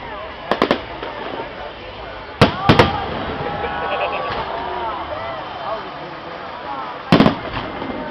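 Aerial firework shells bursting in sharp bangs, coming in clusters about half a second in, at about two and a half seconds (the loudest) and at about seven seconds, with people's voices between the bursts.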